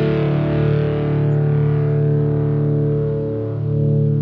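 Instrumental music with long held chords and no singing.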